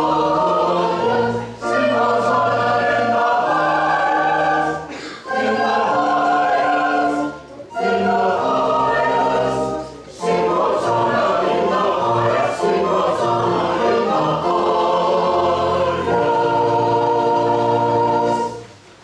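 Church choir singing an anthem in several voice parts, in sustained phrases separated by brief breaths.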